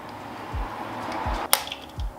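A steel Allen key being handled and fitted into a 5 mm Allen bolt on the carburetor mount. There is a soft scraping rustle with a couple of low bumps, then one sharp metallic click about a second and a half in.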